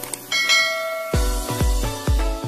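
A bright bell-chime sound effect rings about a third of a second in over background music. About a second in, a heavy electronic beat with deep thumps, a little over two a second, kicks in.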